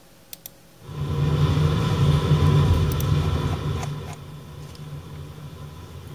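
Recorded thunderstorm audio from a video preview playing through computer speakers: a heavy, noisy rumble that starts about a second in and eases off after about four seconds. Two or three mouse clicks just before it starts.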